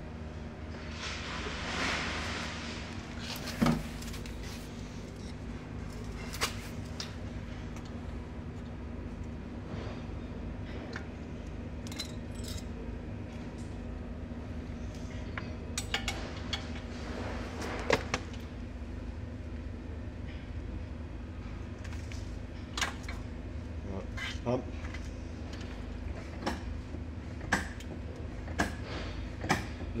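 Scattered metallic clicks and knocks from hand tools and a bleed tube being fitted at a brake caliper's bleed nipple, over a steady low hum.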